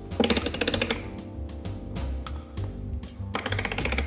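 Background music over a run of sharp, evenly spaced clicks, about three a second, from a hand-worked replica of Hooke's air pump, its geared pumping mechanism ticking as it is operated.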